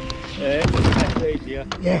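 A few knocks and thuds as a loaded plastic Hobie fishing kayak on its wheeled beach trolley is set down and handled, heard over voices and music.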